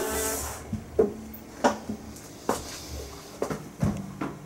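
A sung note over a Kohala ukulele fades out in the first half-second. Then come about five short, sharp ukulele strums, roughly one a second, each damped quickly.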